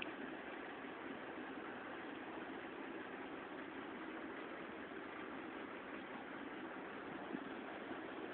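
Steady, featureless background hiss of a room, with one faint click near the end.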